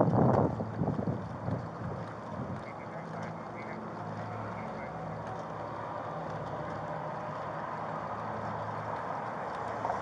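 A loud burst of harsh voice-like sound at the start that fades out in pulses over the first two seconds, then a steady low hum.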